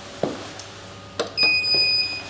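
A couple of footsteps, then a sharp click as the KONE elevator hall call button is pressed. The button gives a steady electronic beep lasting about a second as it lights up to register the call.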